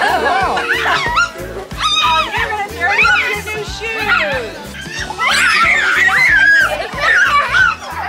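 Young children squealing, calling out and laughing at play, with background music that has a steady beat underneath.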